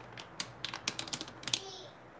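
Plastic soup-mix packet crinkling as it is handled: a string of sharp, irregular crackling clicks.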